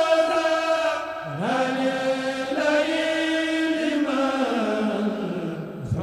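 Men's voices chanting a Mouride khassida, an Arabic devotional poem, without instruments and through microphones. The notes are long and held, with an upward slide about a second in and a slow fall in pitch toward the end.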